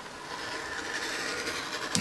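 An adjustable stitching groover cutting a stitching groove along the edge of a piece of leather: a steady scraping that grows a little louder after the first half-second.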